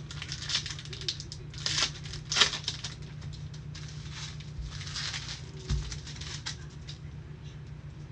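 Gloved hands handling wrapped trading card packs and cards: a run of crinkles and rustles, with the sharpest crackles about two seconds in.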